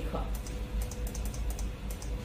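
A quick, irregular run of computer keyboard and mouse clicks, several a second, entering slides one after another in the software, over a faint steady hum.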